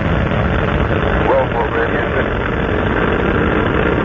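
Loud, steady roar of Space Shuttle Endeavour's solid rocket boosters and main engines climbing away at liftoff. Faint voices come through about a second in.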